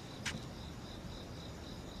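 Crickets chirping in a steady, evenly repeating high pulse as night ambience, with one brief soft click about a quarter of a second in.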